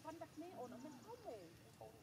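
Monkeys calling: a run of short, high squeaks and coos that swoop up and down in pitch, faint.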